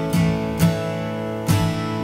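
Acoustic guitar strummed, with three firm strokes spaced about half a second to a second apart and the chords ringing on between them.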